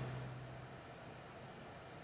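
Faint steady background noise inside a car cabin, with a low hum that fades away during the first second.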